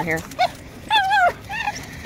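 A dog whining in three short, high-pitched cries, the middle one the longest, as it waits eagerly for a toy to be thrown.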